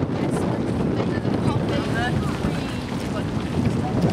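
Wind buffeting the camera microphone outdoors: a steady, rumbling low roar, with faint voices or calls behind it.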